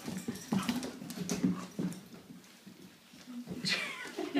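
Two puppies play-fighting: short dog vocal sounds come in irregular bursts, with scuffling on the hard floor. There is a brief quieter stretch about two-thirds of the way through.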